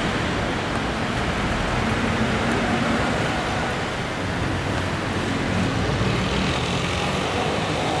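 Steady outdoor din of road traffic.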